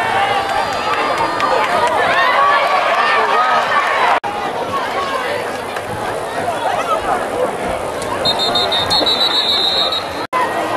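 Football crowd in the stands cheering and shouting, many voices at once, with a brief cut a little after four seconds. Near the end a referee's whistle blows steadily, shrill and high, for nearly two seconds as the play ends in a tackle pile-up.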